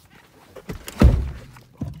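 A single dull, heavy thunk about a second in, with lighter knocks and handling rustle around it, as someone climbs into the cab of a 2014 Nissan Titan pickup.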